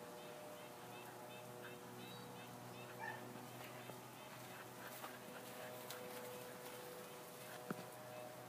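Faint outdoor ambience: small bird chirps repeating every fraction of a second over a steady low hum, with a brief louder sound about three seconds in and a sharp click near the end.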